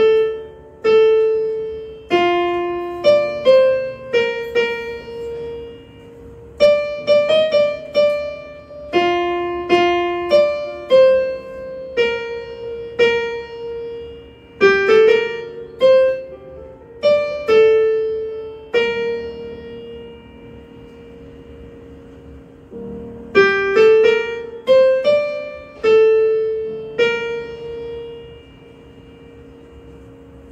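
Electronic keyboard in a piano voice, picked out mostly one note at a time by a learner working through a new tune: each note strikes and rings away, with short stops between phrases. The playing pauses for a few seconds about two-thirds of the way through, then resumes.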